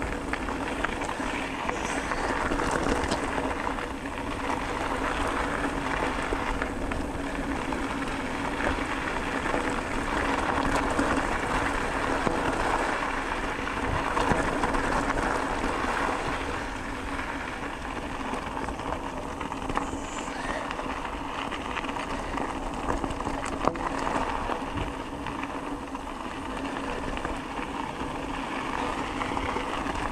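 A bicycle riding over a loose gravel dirt track: its tyres crunch and rattle over small stones, over a steady rushing noise that swells and dips a little, with a few sharp ticks.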